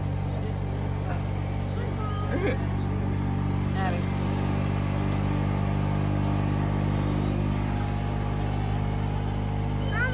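A steady, unchanging low mechanical hum, like an idling motor, with faint scattered voices of people nearby.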